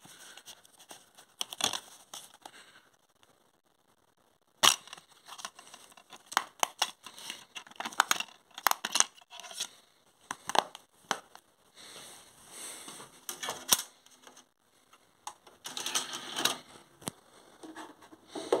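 Close handling noise of a plastic DVD case and the camera: a run of sharp clicks and knocks, the loudest about four and a half seconds in, followed by bursts of scraping and rustling.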